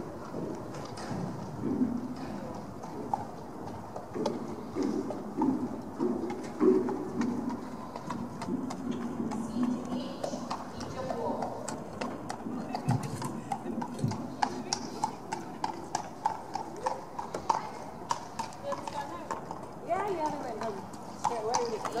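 A horse's hoofbeats on the sand surface of an indoor arena, an ongoing run of soft footfalls as it is ridden around the arena, with voices talking in the background.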